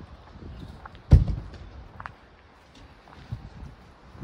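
A travel trailer's exterior storage compartment door shut with a single solid thump about a second in, followed by faint footsteps.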